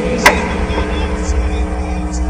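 Background noise of a sermon recording in a pause between words: a steady low rumble with a constant hum. One short, sharp click comes about a quarter of a second in.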